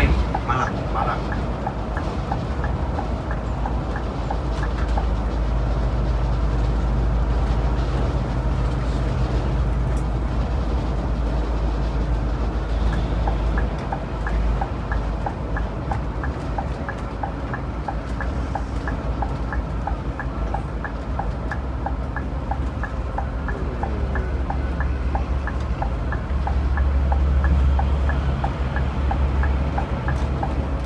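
Cabin drone of a Scania K360iB coach cruising on a highway: a steady low engine and road rumble, which swells for a couple of seconds near the end. A light, even ticking runs along with it, about two or three ticks a second.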